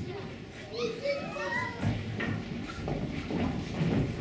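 Several children's voices calling and talking over one another.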